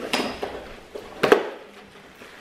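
Gift-wrap tissue paper rustling and crackling as a present is unwrapped, with a short sharp crackle at the start and a louder one a little over a second in.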